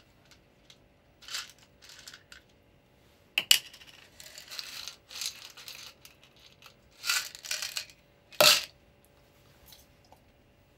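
A small plastic bottle handled in the hands: short bursts of rustling and scraping, with a sharp click about three and a half seconds in and a louder one about eight and a half seconds in.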